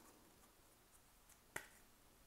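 Near silence, broken once by a single short, sharp click about one and a half seconds in.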